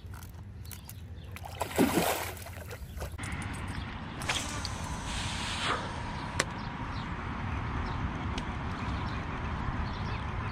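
Water sloshing around a muskie held at the shoreline, with a loud splash about two seconds in as the fish is let go. After that, a steady rushing noise of wind and water.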